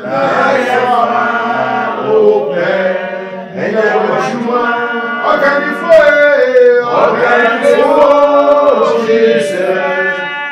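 A man singing slowly in a chant-like style, with long held notes that slide up and down in pitch and short breaks every few seconds.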